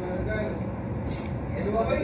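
Indistinct background voices over a steady low rumble, with a brief hiss about a second in.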